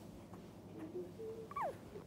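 Three-week-old dachshund puppy giving a faint, short squeak that slides down in pitch about one and a half seconds in, after a couple of soft low whines.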